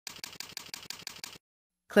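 Computer keyboard typing: a quick, even run of keystroke clicks, about eight a second, entering a short name and stopping after about a second and a half.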